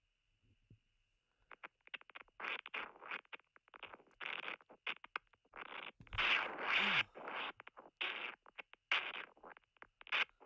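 Spirit box app on a phone, played beside the microphone, sweeping through radio static: after a brief near-silence, a rapid run of short chopped bursts of hiss and sound fragments starts about a second and a half in, over a faint steady high tone.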